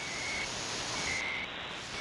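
Shortwave receiver static with two short, steady, high beeps about a second apart: the once-a-second time pulses of the CHU time-signal station, heard slightly off-tune. About a second in, the hiss loses its top end as the receiver is retuned.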